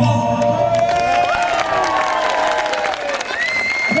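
A live band's song ends with a last chord ringing out, followed by audience applause and cheering.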